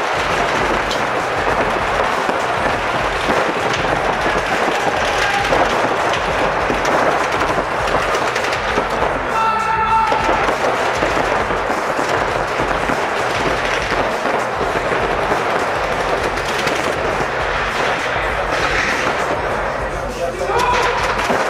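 Paintball markers firing in rapid strings of shots, a dense run of sharp cracks that goes on throughout.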